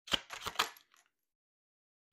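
A quick run of sharp clicks and taps, about half a dozen within the first second, from tarot cards being handled and set down on a stone counter.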